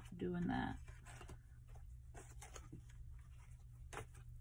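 Faint, scattered soft clicks and rustles of a tarot deck being shuffled by hand.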